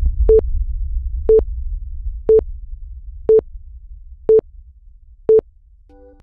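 Countdown timer beeping once a second: six short, identical mid-pitched beeps. Underneath is a low rumble that fades away by about five seconds in.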